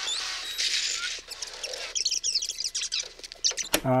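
Glitch-style video transition sound effect marking a skip ahead in time: a hissing, crackly sweep for about two seconds, then a run of quick, high, squeaky chirps.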